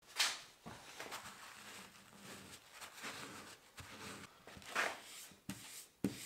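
Cloth wiping loosened rust off the wet cast-iron body of a vinegar-soaked Stanley No. 4 hand plane. Faint rubbing strokes, the loudest just after the start and again near five seconds in.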